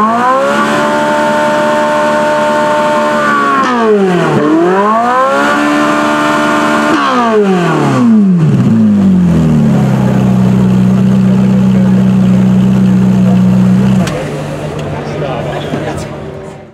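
Supercar engines of a Ferrari 458 Italia (V8) and a Lamborghini Huracán (V10) revved at a standstill. The revs are held high and steady for a few seconds at a time, drop away and climb back twice, then settle into a steady lower note from about ten seconds in that cuts off near fourteen seconds.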